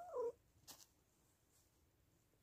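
A mother cat gives one short meow right at the start, calling for her lost newborn kittens; a brief rustle follows under a second later.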